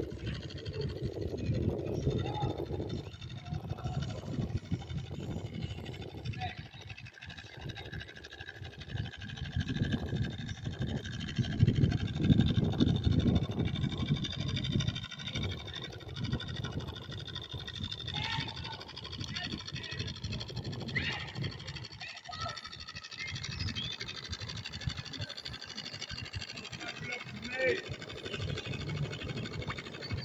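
Gusty wind buffeting the microphone: a low, uneven rumble that swells and drops, loudest about twelve seconds in, with a faint steady high whine above it.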